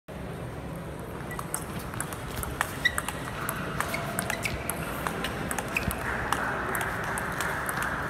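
Table-tennis balls clicking off paddles and table in a rally, many irregular sharp clicks, with a few brief shoe squeaks on the sports floor.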